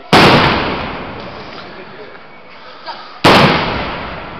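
Two aerial firework shells bursting overhead, about three seconds apart: each a sharp, very loud bang followed by a long, fading, echoing rumble. A small pop comes just before the second burst.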